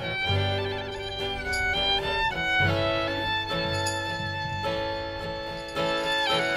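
Live acoustic band playing an instrumental passage: a fiddle carries the melody in long bowed notes with vibrato, over acoustic guitar and a bass line.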